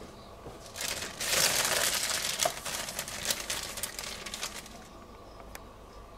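Clear plastic bag of boilies being handled, the plastic crinkling. It starts about a second in, is loudest for the next second or so, then thins out into scattered crackles.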